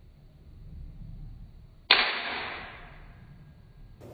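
A Sanei Walther P38 spring air-cocking toy pistol firing one shot: a single sharp crack about two seconds in, ringing away over about a second.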